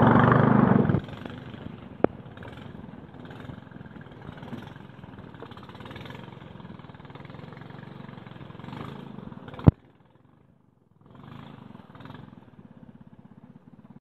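A small boat's motor runs steadily. A sharp click comes about two seconds in and a loud snap near ten seconds. After the snap the sound drops out for about a second, then the motor returns.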